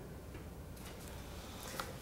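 Quiet room tone with a few faint, sharp clicks in the second half.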